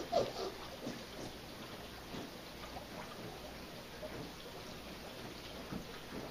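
Faint water sloshing and trickling as a hand moves slowly in a shallow plastic tub of water, with a few small drips and ticks.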